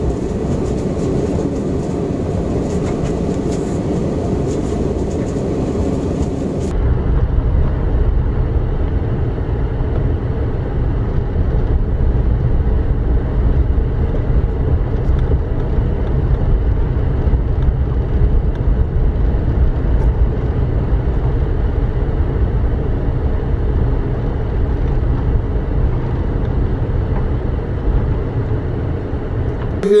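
Car driving on snow-packed streets, heard from inside the cabin: a steady rumble of engine and tyres. About seven seconds in it changes suddenly to a deeper, duller rumble.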